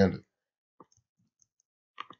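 Computer mouse clicks: one faint click about a second in, then two quick clicks close together near the end, after the tail of a spoken word.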